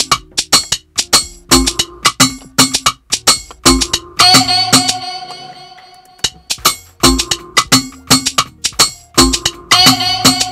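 Afrobeats drum loop playing back from a music production session: quick shekere shaker clicks over kick drums in a repeating pattern. A held higher-pitched sound comes in about four seconds in and again near the end.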